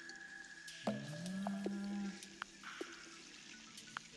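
A man's drawn-out wordless vocal sound of wonder, like a long 'oooh', starting about a second in, rising in pitch and then held for about a second. Around it are a faint steady high tone and a few sharp clicks.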